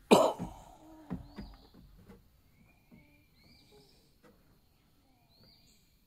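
A single sharp, loud cough-like huff of breath right at the start, followed by a few soft knocks and faint bird chirps.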